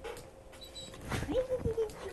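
A dog whining once, briefly, about a second in.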